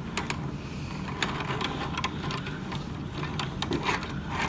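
Plastic wheels of a Transformers Optimus Prime toy truck rolling and being shifted over a ridged plastic display base: a steady low rumble with scattered small clicks of hard plastic.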